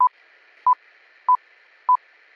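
Film-leader countdown sound effect: short, single-pitch beeps about every 0.6 seconds, four of them, over a faint steady hiss.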